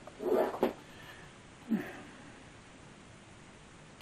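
A short vocal noise from a man, a brief grunt or snort whose pitch slides downward, under two seconds in, then low quiet room tone.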